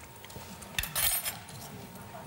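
Quiet clinking of metal cutlery against plates as a spoonful is tasted, with one short, brighter burst about a second in.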